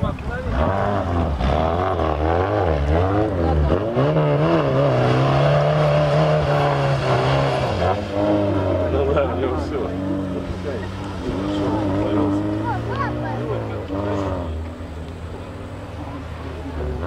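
A 4x4's engine revving hard and unevenly, its pitch rising and falling as the car works its way along the off-road course; it is loudest in the middle and eases off after about eight seconds.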